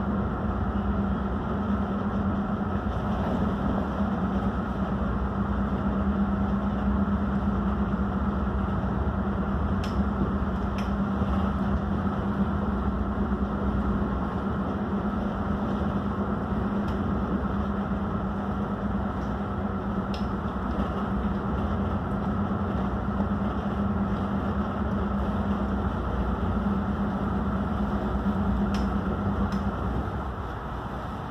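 Motor yacht's inboard engines running at low manoeuvring speed, heard inside the helm cabin as a steady drone with a hum just under 200 Hz. A few faint ticks sound over it.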